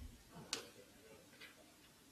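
Near silence with two sharp clicks about a second apart, the first one louder.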